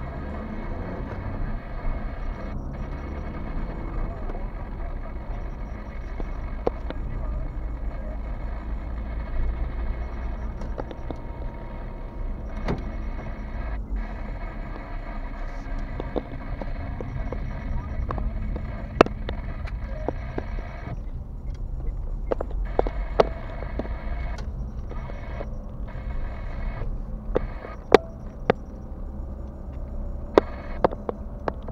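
Road noise inside a moving car: a steady low rumble of engine and tyres. Irregular sharp clicks or knocks come in during the second half.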